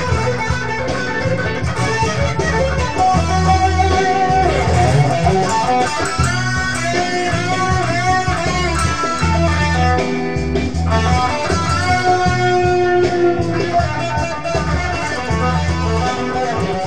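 Electric guitar playing a lead melody with string bends, over a steady low bass part.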